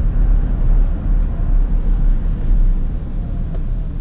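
Ford pickup truck rolling slowly, a steady low engine and road rumble heard from inside the cab.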